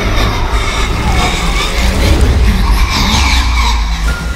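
Horror-film sound effects: a loud low rumble under screeching, sliding high tones.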